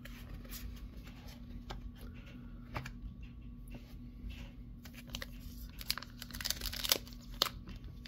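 Trading cards handled and laid down with light clicks, then the foil wrapper of a Pokémon booster pack crinkling as it is picked up and worked in the hands. The crinkling grows denser and louder over the last couple of seconds.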